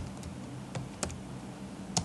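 Computer keyboard keys tapped a few times while a word is typed: three separate clicks, spaced a few tenths of a second apart.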